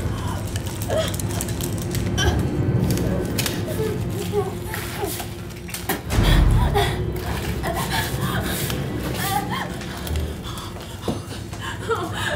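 A wounded young woman's gasps, whimpers and strained breathing as she crawls across the floor, in short broken cries scattered through, over a steady low rumble. A heavy low thud comes about six seconds in.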